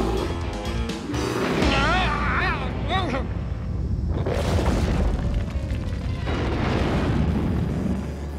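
Cartoon rockslide sound effect: a long rumbling crash of tumbling rocks fills the second half, over orchestral background music. Before it, about two seconds in, comes a wavering cry.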